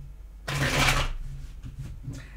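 A deck of tarot cards shuffled by hand: a rush of riffling cards starting about half a second in, lasting about half a second and then dying away.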